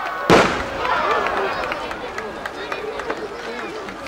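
A round aerial firework shell bursting with one loud boom about a third of a second in, its report trailing off in an echo, over the chatter of a crowd of spectators.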